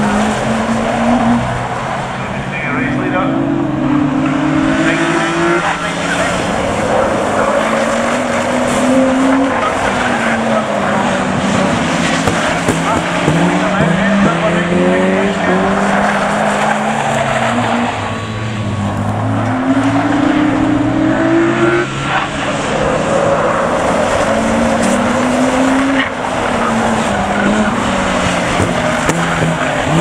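Several road-going saloon cars racing on a short oval, their engines revving up and dropping away over and over as the cars accelerate down the straights and lift for the corners, with the sound of more than one car overlapping.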